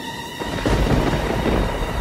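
A thunder crash sound effect comes in suddenly about half a second in and keeps rumbling, over a music bed of steady held tones.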